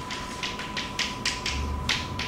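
Chalk writing on a blackboard: a quick irregular run of about ten short taps and scrapes as symbols are written, the sharpest about a second in and near the end.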